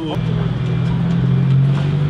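Stunt scooter's wheels rolling over paving tiles, a steady low rumble, with a sharp click just after the start as the scooter is popped into the air for a trick.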